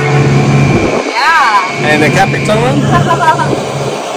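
Suzuki 150 outboard motor running at a steady drone with the boat under way, dropping out briefly about a second in, with people's voices over it.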